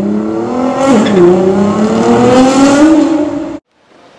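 Car engine accelerating hard: its pitch climbs steadily, dips briefly about a second in as if through a gear change, then climbs again before cutting off abruptly near the end.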